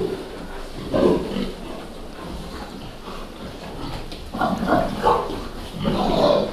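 Large fattening pigs grunting in their pen: one grunt about a second in, then a run of several short grunts near the end.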